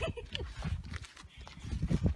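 Footsteps on asphalt, a few short scuffing knocks, over a low rumble of wind on the microphone.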